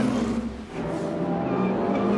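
A short broadcast transition sting with a dip in level about half a second in, then race car engines running on track with a steady engine note.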